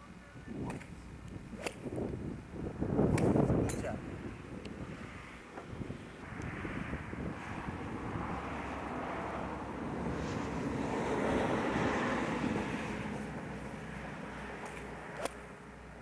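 A rushing noise swells and fades through the middle, and a single sharp click comes near the end: a golf club striking the ball. A few other sharp clicks come in the first few seconds.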